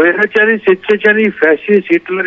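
Speech only: a man talking over a telephone line, his voice thin and cut off at the top.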